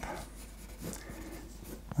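Pencil scratching faintly on drawing paper pinned to an easel as lines are sketched in.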